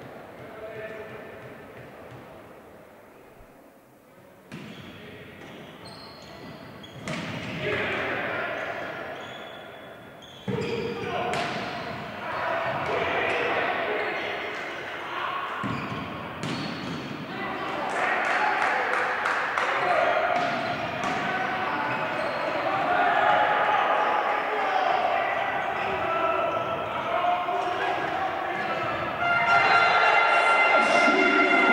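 A volleyball bounced on a hardwood gym floor before a serve, then the sharp hits of a rally. Several voices shout and call in the echoing hall, getting louder over the last third as the rally goes on.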